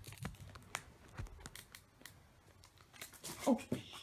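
Foil booster pack wrapper crinkling and being torn open: a string of faint crackles and clicks.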